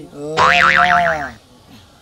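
Comic 'boing' sound effect: a springy twang with a fast wobble in pitch, starting about half a second in and lasting about a second.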